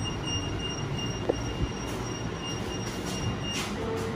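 Electronic beeper of a KONE MonoSpace lift sounding a rapid, even beep, about four a second, while its doors stand open, cutting off about three and a half seconds in. A steady low rumble of station ambience lies underneath.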